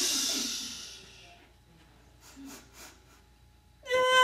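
A woman's long exhaled breath as part of a vocal warm-up: a hissing rush of air that fades out over about a second. Near quiet follows, with two faint short breaths about halfway through.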